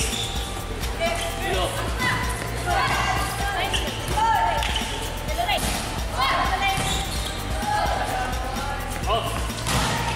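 Live volleyball game sound: players' voices calling out on the court, short shoe squeaks, and a few sharp hits of the ball.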